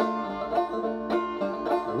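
Banjo played solo, a run of plucked notes ringing out in a steady rhythm.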